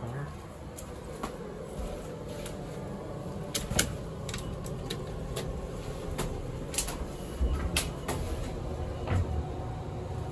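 Steady hum inside a Mowrey hydraulic elevator cab, broken by about half a dozen sharp clicks and knocks, the loudest about four seconds in.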